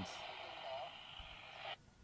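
Faint steady hiss from an open commentary microphone line between phrases, with a faint brief voice in it, cutting off abruptly near the end.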